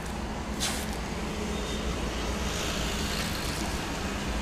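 Steady rumble of street traffic, with a brief hiss less than a second in.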